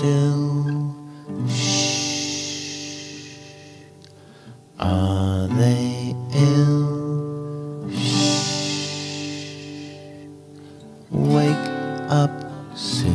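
Children's song over acoustic guitar: two short sung lines, 'Oh how still' and 'Are they ill?', are each followed by a long drawn-out 'shhhh' hush of about two seconds.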